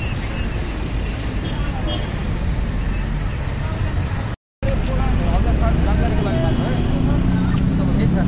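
Road traffic: engines of passing vans, cars and motorcycles in a steady rumble, cut off by a brief dropout about halfway through, with people's voices in the background afterwards.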